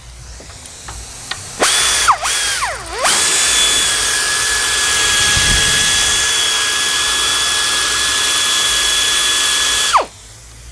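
Cordless electric ratchet running on a 10 mm radiator mounting bolt, a steady high whine. It starts about one and a half seconds in and slows twice as it breaks the bolt loose. It then spins evenly for about seven seconds while backing the bolt out, and winds down at the very end.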